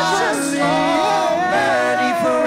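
A woman and a small group of men singing a slow song together in harmony, holding long notes.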